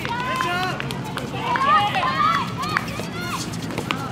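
Handball game in play: players' voices calling and shouting over one another, running footsteps on the court, and a few sharp knocks.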